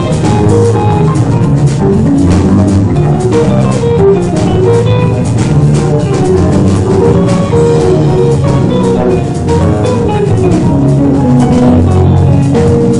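A live rock-jazz combo playing: drum kit, electric bass guitar, electric guitars, piano and keyboard together, with steady drum strokes and moving bass and chord lines.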